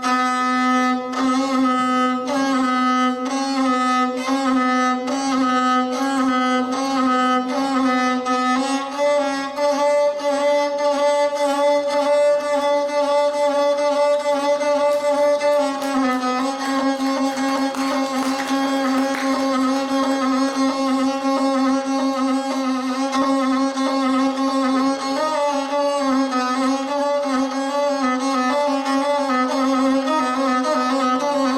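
Gusle, the single-string bowed Balkan folk fiddle, played solo. The bow moves in repeated strokes over a held low note, and the melody shifts pitch about a third of the way in and again about halfway through.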